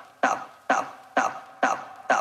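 Tech house DJ mix in a stripped-down breakdown: a short, clipped vocal-like stab repeats on the beat, four times about half a second apart, each one fading quickly, with the kick drum and bass dropped out.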